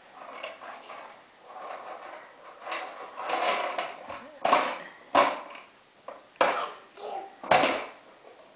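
A toddler babbling, then four sharp knocks in the second half, the loudest sounds, roughly a second apart.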